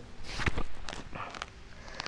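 A few soft footsteps and shuffles on a tiled floor, with light scattered taps.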